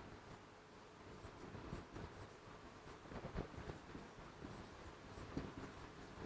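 Faint rubbing and tapping strokes of handwriting on an interactive display screen, coming in short, irregular bursts as the words are written.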